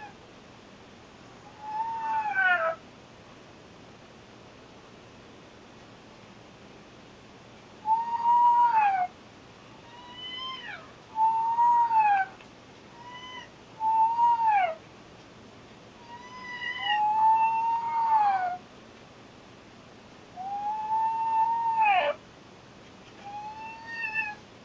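Tabby cat meowing over and over: one meow near the start, then a long run of about nine meows of varying length, some drawn out and some short and faint.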